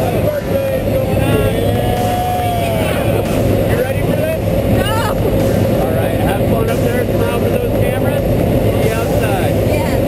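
Small jump plane's engine and propeller droning steadily, heard inside the cabin, with people's voices over it.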